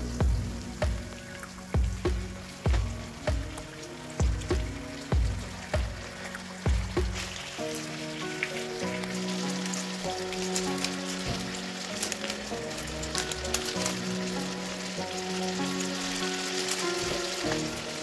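Onions and chicken sizzling in a stainless steel frying pan, under background music: a steady low thumping beat about every 0.8 s for the first seven seconds, then a melody of held notes. The sizzle grows brighter in the second half once the chicken is in the pan.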